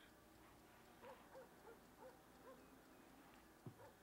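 Near silence: faint room tone, with a short run of very faint, soft pitched notes about a second in.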